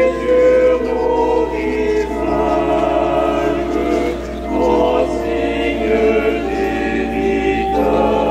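Church organ playing a slow piece of sustained chords that change every second or so, as the closing music of the Mass.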